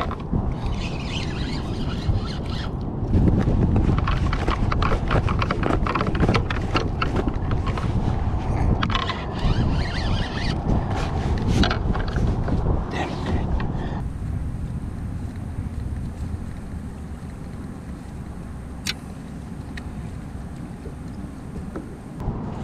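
Wind buffeting an action camera's microphone, with dense clicking and rattling from handling a fishing rod and spinning reel while fighting a fish. The clicking stops abruptly about two-thirds through, leaving a quieter wind hiss and a single sharp click near the end.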